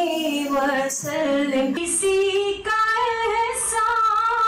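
A woman singing a naat unaccompanied into a microphone, holding long ornamented notes that slide in pitch, with a short break for breath about halfway through.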